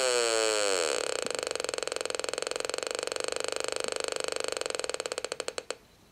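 555-timer audio oscillator through a small loudspeaker, its buzzing tone falling in pitch as the potentiometer is turned back, then breaking into rapid clicking that slows and cuts out shortly before the end. The oscillator is being set just below the point of oscillation.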